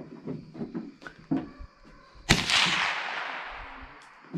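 A single .30-30 rifle shot about two seconds in, its report dying away over more than a second.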